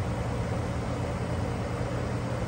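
A steady low hum of a running motor, continuous and even throughout.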